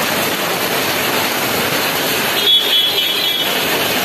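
Heavy rain falling, a steady even hiss. A brief high-pitched tone cuts in about two and a half seconds in.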